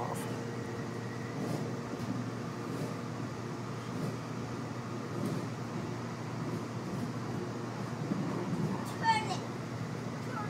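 Steady running rumble heard inside a moving light rail car. There is a brief high-pitched sliding sound about nine seconds in.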